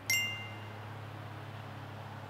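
A single bright metallic ding right at the start, ringing out within about half a second, followed by a low steady hum.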